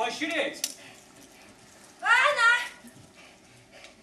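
A woman's voice: a short spoken phrase at the very start, then a loud, high-pitched, drawn-out vocal exclamation about two seconds in.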